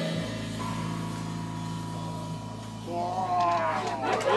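The last chord of a live electric bass, electric guitar and drum trio ringing out and slowly fading after the band stops. About three seconds in, a voice calls out with a bending pitch as the crowd starts to respond.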